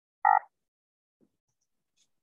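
A single short croaky vocal sound from a person, like a brief throat-clear, about a quarter of a second in; otherwise near silence.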